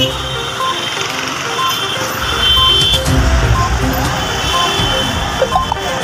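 Street traffic noise with a low rumble under a background music bed, and a short high beep repeating about once a second.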